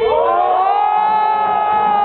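Dance-battle music played through the sound system, breaking into a single siren-like pitched sound that slides up at the start and holds, with the beat and bass dropped out.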